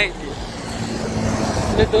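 A car passing close by on a highway, its engine and tyre noise growing louder through the second half.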